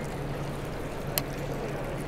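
Steady background noise of a large, busy exhibition hall, with a faint low hum and a single sharp click about a second in.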